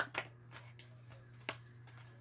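Tarot cards being handled: two soft clicks, one just after the start and one about one and a half seconds in, over a steady low hum.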